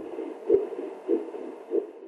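Fetal heartbeat recorded with the Babywatch app and played back: four even beats, a little over half a second apart.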